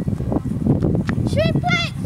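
Rough wind rumble on the microphone with indistinct voices underneath, and a few short, high, rising-and-falling calls in the second half.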